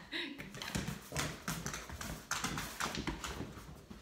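Footsteps of a person and a Labrador retriever walking on a hard floor: a run of short sharp clicks and taps from shoes and the dog's claws.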